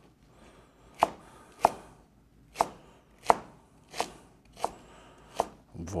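Chef's knife slicing a leek into julienne strips on a plastic cutting board: seven crisp knife strikes against the board, roughly one every two-thirds of a second, starting about a second in.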